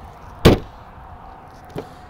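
A single sharp clunk from the 2012 Jeep Grand Cherokee's rear hatch latch, followed by a much fainter click near the end.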